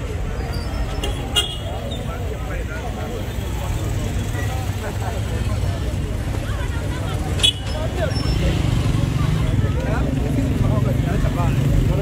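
Street traffic: a steady low engine rumble with voices in the background, and two brief sharp sounds, about a second and a half in and again just past seven seconds.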